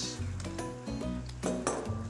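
Background music over a wooden spatula clinking and scraping in a frying pan as pork belly and hard-boiled eggs are stirred.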